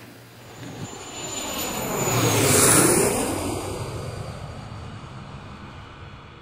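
An airplane flying past: the engine sound builds to a peak about halfway through, then fades away.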